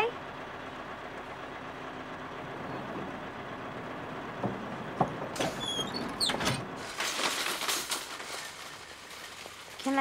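Small school bus idling at the kerb: a steady low hum. Two sharp knocks come about halfway through, then brief high squeals and a short burst of clattering noise around the doorway.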